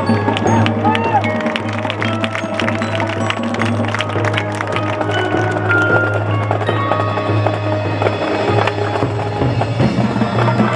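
High school marching band playing its field show live: held wind chords over a low bass line, with a dense run of sharp percussion hits in the first half.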